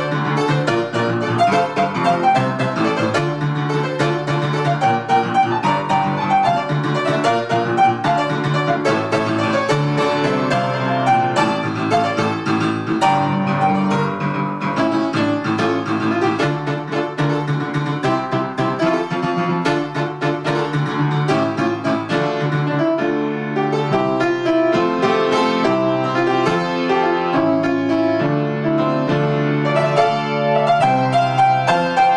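Grand piano played solo: a dense, driving melody over repeated low bass notes, at a steady level throughout.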